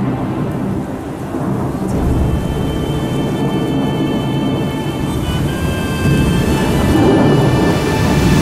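Thunderstorm: steady rain with rumbling thunder that swells after about six seconds, mixed with held music tones.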